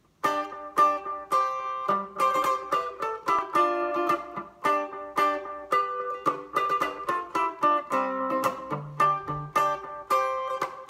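Customized 1957 Harmony Stratotone electric guitar played clean through a Sears Silvertone 1452 amp-in-case, picked chords and single notes with a sharp attack on each, about two a second.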